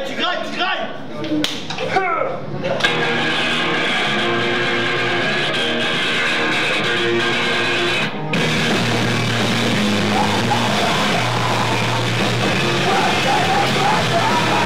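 A live rock band with distorted electric guitar, bass and drums starts playing a few seconds in, recorded with heavy distortion on a camcorder microphone. The music drops out for a moment about eight seconds in, then comes back fuller and heavier.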